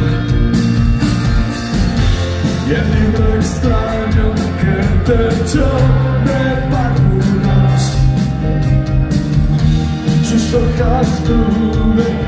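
A rock band playing live and loud, with electric guitars, bass and drums under a man singing into a microphone.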